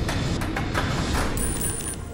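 Game-show tension music over a steady rumble while a counter falls down through the coin-pusher machine, with a few sharp clacks as the counter strikes the pins on its way down.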